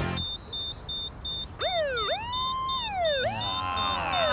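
An electronic ankle monitor beeping rapidly at a high pitch, an alarm that the wearer has broken home detention. About one and a half seconds in, a police siren starts wailing, rising and falling, with a second sweep overlapping it near the end.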